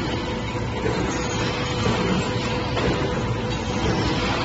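Steady machinery noise of a wire-processing workshop: an even rumble and hiss with a constant humming tone running through it.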